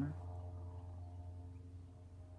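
A woman's voice trails off right at the start, then faint steady low hum of room tone with no distinct event.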